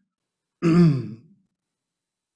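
A man clearing his throat once, a short sound of under a second, his throat dry from speaking.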